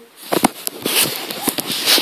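Loud rustling and crackling handling noise as the camera is moved about close to the microphone, with many sharp clicks through it.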